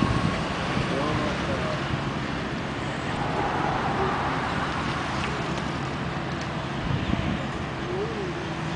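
Steady low engine hum under a spray of water from a fire hose being played on a burned car, with faint distant voices.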